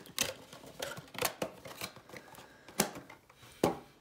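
A cardboard trading-card blaster box and its foil-wrapped packs being handled on a table. The sound is a few irregular sharp clicks and taps with light rustling between them.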